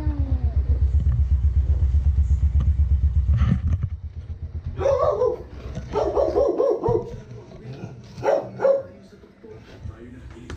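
Motor scooter engine idling with a rapid low throb, which drops away about four seconds in. After that there are a few short, loud barks from a dog.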